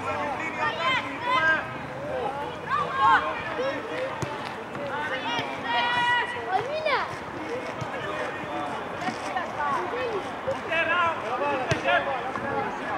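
Young players and sideline spectators shouting and calling across a football pitch, high children's shouts rising and falling in quick bursts. One call is held about six seconds in.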